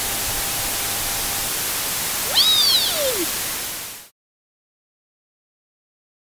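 Television-style static hiss from a channel intro sound effect, with a short swooping tone that rises then falls about two and a half seconds in. The hiss cuts off abruptly about four seconds in.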